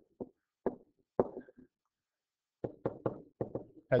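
Pen stylus tapping and knocking on the writing surface while handwriting: a string of short, sharp taps with gaps between them, coming thickest over the last second and a half.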